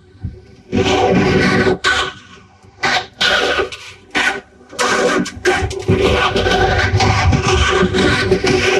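Animated characters' voices run through a heavy phasing audio effect, garbled so that no words come through: several loud bursts with short gaps, then near-continuous from about five seconds in.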